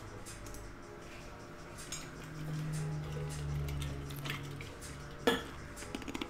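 Small clicks and knocks of objects being handled, with one sharper click about five seconds in. A low steady hum sounds through the middle seconds.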